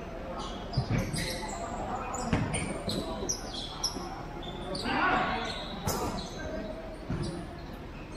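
A futsal ball being kicked and bouncing on a tiled court: a scattering of sharp thuds over a few seconds, among players' shouts in a large hall.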